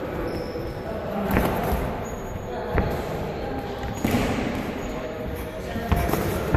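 Boxing sparring in a ring: a few sharp thuds of gloves landing and shoes on the canvas, about one and a half, three and four seconds in, over a low gym background.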